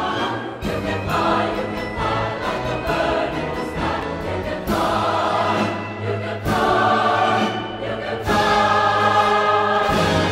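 Music with a choir singing, sustained chords that change every second or two.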